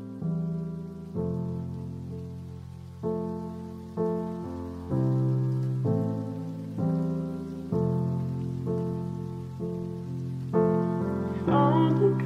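Slow piano chords opening a lofi ballad, each struck and left to fade, roughly one a second. A singing voice comes in near the end.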